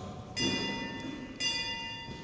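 A bell struck twice, about a second apart, each stroke ringing and fading away.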